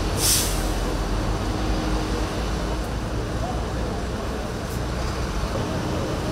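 Fire trucks' engines running steadily with a low rumble as they power the aerial ladders, a short hiss just after the start, and voices in the background.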